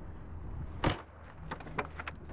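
A car door being handled: one sharp clack about a second in, then a few lighter clicks, over a steady low rumble.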